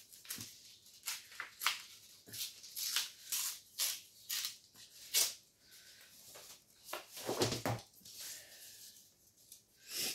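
Glossy magazine paper being torn and handled: a run of short, crisp rips and rustles through the first five seconds or so, then a duller bump with rustling about seven seconds in.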